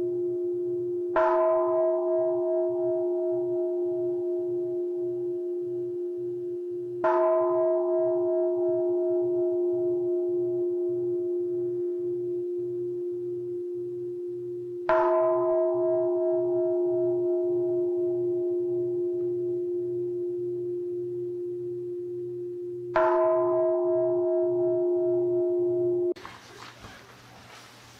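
A large struck bowl bell rung four times, about every six to eight seconds. Each strike rings on in a steady, slowly fading tone with a low throbbing beneath it, and the ringing has not died out when the next strike comes.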